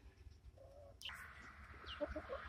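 Near silence. About halfway through, faint outdoor hiss starts, and a short, faint falling bird call comes near the end.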